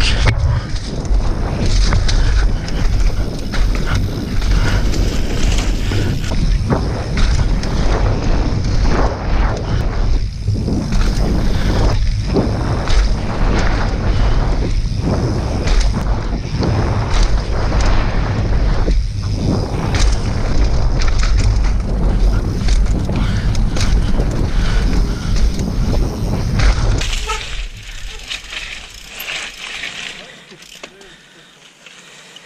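Heavy wind buffeting on an action camera's microphone, with mountain bike tyres running over a dirt trail at speed. The noise drops away over the last few seconds as the bike slows.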